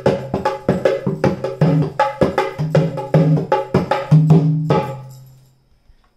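Dholak played by hand in a fast bhangra-style rhythm: quick finger strokes on one head interleaved with resonant bass strokes on the other. The playing stops about five seconds in, and the last bass stroke rings out for about a second.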